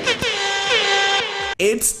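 A single long pitched note, horn-like and rich in overtones, that slides down at the start and is then held steady before cutting off abruptly about a second and a half in. A short swish and the start of a TV-show intro follow.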